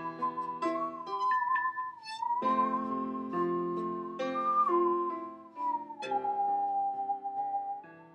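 Bowed musical saw, a 26-inch Stanley handsaw, singing a high, pure, wavering melody line that slides down to a lower held note past the middle, over a recorded piano backing track.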